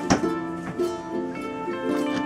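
Background music: a light plucked-string melody, with one short sharp click about a tenth of a second in.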